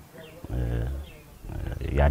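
A man speaking in Afaan Oromo: a short pause, then a low, drawn-out vowel, then speech picking up again near the end.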